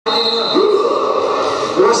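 Voices in a large sports hall over steady music, with a commentator starting to speak near the end.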